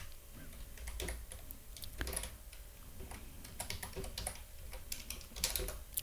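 Computer keyboard typing: irregular, fairly quiet keystrokes, with a quicker run of clicks near the end.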